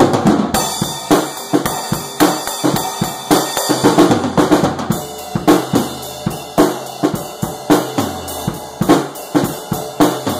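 Acoustic drum kit played in a steady beat: snare and bass drum hits with cymbals ringing over them.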